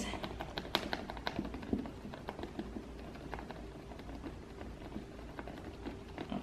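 A small rubber pouncer dabbing paint through a plastic stencil onto a paper lampshade: a run of light, quick taps, thinning out after about two seconds.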